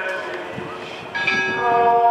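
Church bells tolling. Long overlapping tones ring on, and a fresh stroke sounds a little after a second in.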